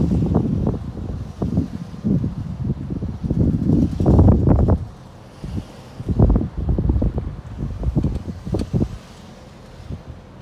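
Wind buffeting the microphone in irregular low rumbling gusts, with a few quieter gaps.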